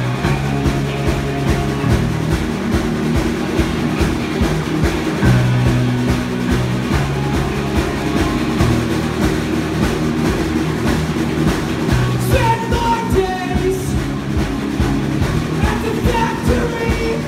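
Live punk rock band playing: distorted electric guitars, bass and a drum kit at full volume, with a sung voice coming in about twelve seconds in.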